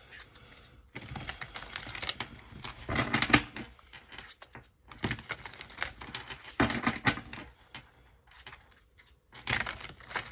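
A deck of tarot cards being shuffled by hand: several short bursts of cards rustling and flicking against each other, with brief pauses between.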